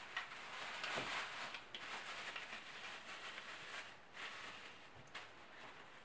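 Thin plastic bag rustling faintly as it is handled and stretched over a white plastic clip-on bag-holder frame, with a few light clicks from the plastic parts.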